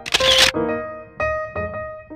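A camera-shutter sound effect, one short burst at the very start, over background piano music that carries on through the rest.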